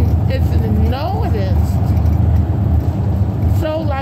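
Steady low rumble of a city bus's drivetrain and road noise heard from inside the cabin. About a second in, a short voice sound rises and falls in pitch.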